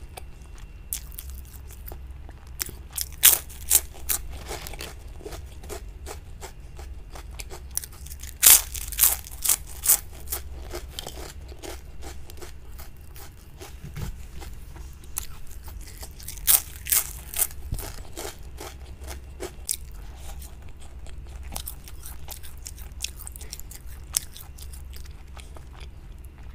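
A crisp chip being bitten and chewed close to the microphone. Sharp crunches come in three main bursts of several each, with quieter chewing crackle between them.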